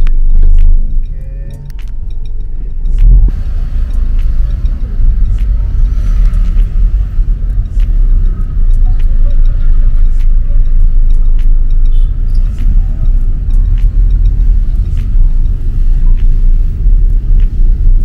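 Low rumble of a moving car heard from inside the cabin, loud and uneven. It drops back briefly about a second in, then swells again.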